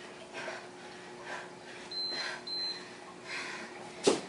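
Gymboss interval timer beeping twice, two short high beeps about two seconds in, signalling a change of interval. Around it come hard, rhythmic breaths of exertion, about one a second.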